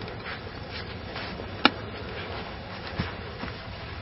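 Steady outdoor background noise with no clear source, broken by one sharp click a little before halfway and a fainter knock near the end.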